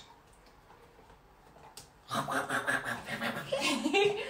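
Near silence with a single small click, then from about halfway a person laughing in quick, low pulses.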